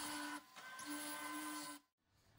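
Small yellow plastic DC gear motor (hobby TT motor), switched through a relay from a game controller, running with a steady whine. It cuts out briefly about half a second in, runs again, and stops near the end.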